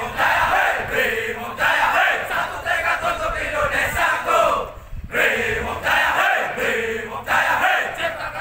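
A platoon of Brimob Gegana police officers shouting a yel-yel, a rhythmic military group chant and war cry in unison. There is one short break about five seconds in.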